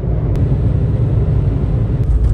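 A loud, steady low rumble with a fainter hiss above it.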